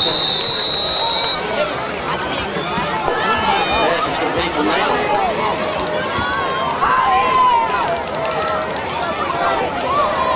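A referee's whistle blows a steady shrill note as the play ends on a tackle, cutting off about a second in. It is followed by the continuous chatter and calls of a crowd of many voices.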